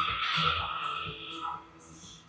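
Background music with a steady beat, under a long forced breath out from a man straining through a one-arm machine row; the breath fades out about halfway through.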